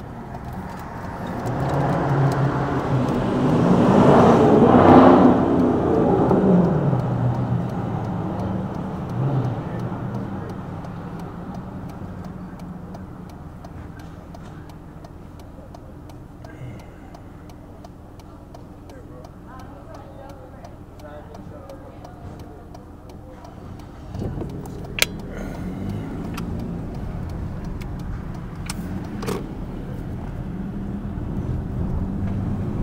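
Road traffic heard from a car waiting at a light: a passing vehicle swells to a loud peak about five seconds in and fades over several seconds. Near the end the car's own road noise rises as it pulls away, with one sharp click just after.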